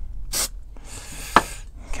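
Aerosol spray can of textured paint hissing in short bursts: a brief spray about half a second in, then a longer one from about a second in, with a single click partway through.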